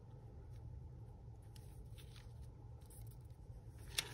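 Faint rustling and light taps of a sheet of paper being laid down and smoothed by hand, a few soft touches spread through, over a steady low room hum.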